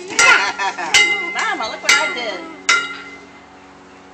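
Excited voices and laughter, with four sharp ringing clinks a little under a second apart, each leaving a brief bell-like ring.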